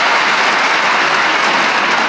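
Large audience applauding, a dense, steady clapping that fills the pause after a recited verse.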